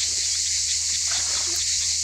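A steady high hiss, with faint rustles of an animal pushing through streamside grass and a short low sound about one and a half seconds in.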